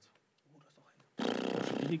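Poker chips clattering as a bet is pushed into the pot. The clatter starts suddenly a little over a second in, after near silence, and lasts under a second.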